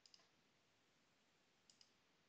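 Near silence broken by faint computer mouse clicks: a quick pair at the start and another pair near the end.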